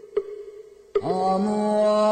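Buddhist mantra chanting. A low held note with one soft knock early on, then about a second in a louder chanted note begins and is held steadily.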